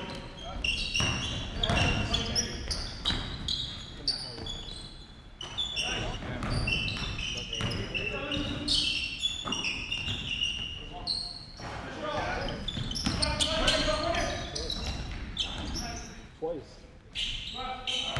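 Basketball bouncing on a hardwood gym floor as it is dribbled, a string of short knocks ringing in a large hall, with players' voices calling out during play.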